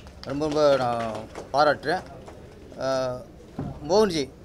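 Speech: a man talking in Tamil, in several short phrases with pauses between.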